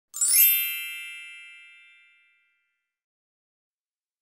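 A bright synthetic chime used as an intro sound effect: one shimmering ding of many ringing tones that sweeps up briefly and fades away over about two seconds.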